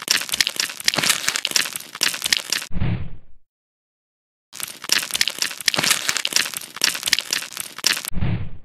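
Crisp, dense crackling and crunching, a foley effect of a blade scraping through a brittle crust. It comes in two runs of about three seconds each, with a second's silence between; the first run ends in a short, low, muffled thud.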